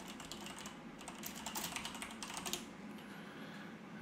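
Typing on a computer keyboard: a quick, quiet run of key clicks starting about a second in and stopping shortly before the end.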